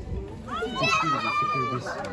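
Voices, with a child calling out in a high voice that rises and then holds one long note, over other talk.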